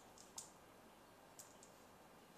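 Faint light clicks of small plastic dice knocking together as a hand picks through them on the table: a few near the start and two more about a second and a half in.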